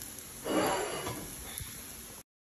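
A short scrape of a wire whisk against a nonstick skillet about half a second in, as scrambled eggs are pushed out of the pan. Faint room background after it.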